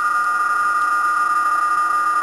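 Amateur HF transceiver (Yaesu FT-847) speaker playing several PSK digital-mode signals at once: steady tones of different pitches, the two loudest close together, over band hiss.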